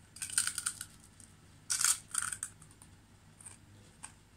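Biting and chewing a hard, crisp fried chicken-skin cracker (tori-kawa senbei). There are two bouts of dry crunching, the first just after the start and a louder one about two seconds in, then a faint crunch near the end.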